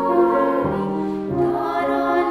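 Children's choir singing with grand piano accompaniment, sustained notes moving from one pitch to the next.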